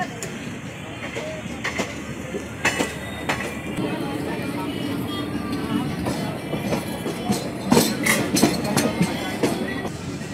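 Train running through a station yard, heard from on board: steady wheel and coach rumble, broken by sharp clacks and knocks as the wheels cross rail joints and points, in a cluster near the end.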